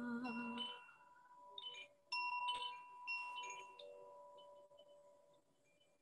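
A sung hum ends in the first second, then a hand-held tube chime tinkles with several scattered strikes. Its ringing notes fade away to near silence near the end.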